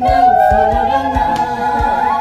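A song with a group of voices singing long held notes that slide slowly downward, over a steady low drum beat about every half second.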